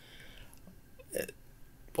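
Quiet room tone in a pause of a man's speech, broken about a second in by one short vocal sound from him, a brief catch in the voice or throat.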